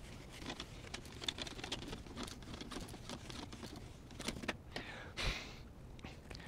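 Felt whiteboard eraser rubbing across a whiteboard: a faint run of quick scrubbing and scratching strokes, with a louder swish about five seconds in.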